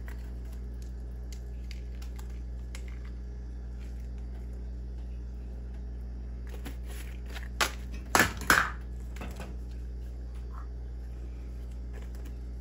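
A steady low hum runs under faint ticks as chili powder is shaken from a glass spice jar over a frying pan. About eight seconds in come three sharp knocks in quick succession, the jar being handled against the pan or stovetop.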